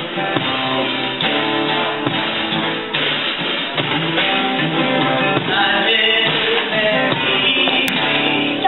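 Live guitar and drum kit playing a song together, steadily throughout.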